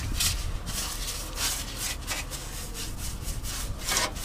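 Paintbrush strokes scrubbing thick wax-oil underseal onto a car's metal underbody: a rough rasp, repeated irregularly a little under once every half second.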